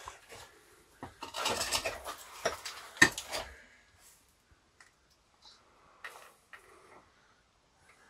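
Scuffing and clattering of someone clambering over rock in a low cave passage, with one sharp knock about three seconds in, then a few faint clicks and scrapes.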